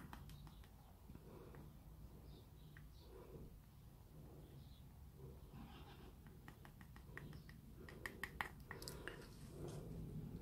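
Near silence: room tone with a faint low hum and scattered faint ticks from gloved hands handling a small canvas, which come more often between about six and nine seconds in.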